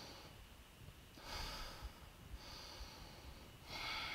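A woman breathing audibly and faintly while holding a stretch during a high-intensity workout: about three soft, hissy breaths a little over a second apart.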